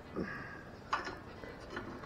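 Faint handling sounds of a hand feeling around inside an empty headlight housing for its wiring plug, with a single light click about a second in.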